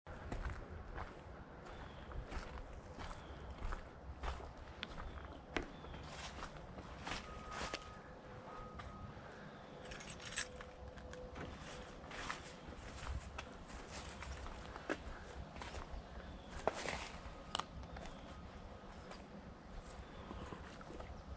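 Footsteps walking through dry fallen leaves and grass on a woodland trail, with an uneven crunch about twice a second.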